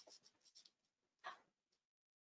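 Near silence on a video-call audio feed: faint rustling and small clicks, with one slightly louder scratchy rustle about a second and a quarter in. The sound then cuts to dead silence just before the end.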